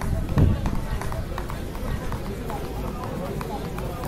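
Voices of people talking in the background, not made out as words, with footsteps as the holder of a hand-held phone walks. A low rumble on the microphone about half a second in is the loudest moment.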